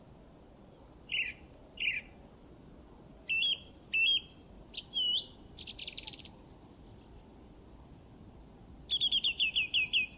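Birdsong: separate short chirps and whistled notes, then a fast run of repeated descending notes near the end.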